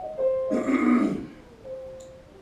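Soft piano notes held in the background. About half a second in, a person makes a short, rough throat noise lasting under a second.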